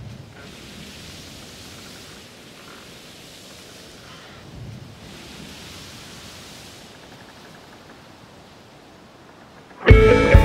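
Soft washing noise that swells and fades twice, like surf breaking on a shore, opening the song. Just before the end, the full band comes in loudly with guitars and drums.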